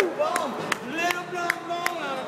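People's voices calling out, one drawn out in a long call, over a run of sharp smacks about two to three a second.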